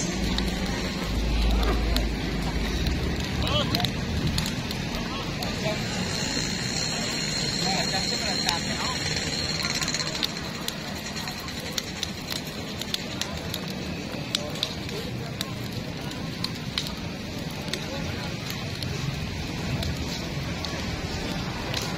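Cremation fire crackling with irregular sharp pops as the wooden bull sarcophagus and its platform burn, over a murmur of crowd voices. A low rumble fills the first few seconds, and a high hiss comes in from about six to ten seconds in.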